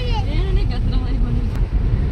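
A moving car's road and engine noise heard from inside the cabin: a steady low rumble.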